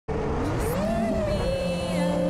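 Racing quadcopter's brushless motors spinning up on the ground: a whine that rises quickly about half a second in, then holds at a steady pitch.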